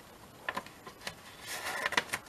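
Light paper handling: a few soft clicks about half a second in, then a brief rustle of paper near the end as a paperclip envelope is slid onto the edge of a journal page.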